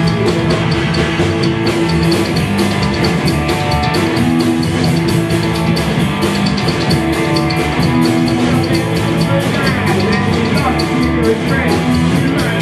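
Live rockabilly band playing an instrumental passage: electric guitar, upright bass and drum kit over a steady, fast beat.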